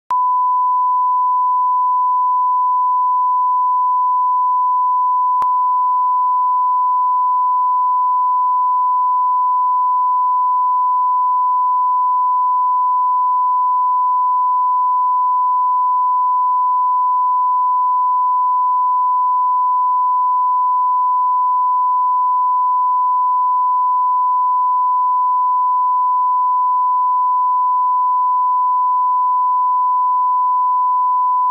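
Steady 1 kHz line-up reference tone, a single pure beep held at constant level, played with broadcast colour bars; a faint click about five seconds in.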